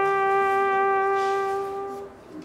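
Background music: a single long held instrumental note, fading toward the end.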